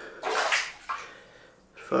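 Water splashing in a bath or shower, in two short bursts, the first the louder.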